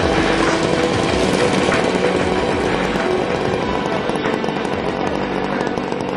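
Background music fading out, giving way near the end to the small engine of an RC scale model plane running at low throttle as it taxis.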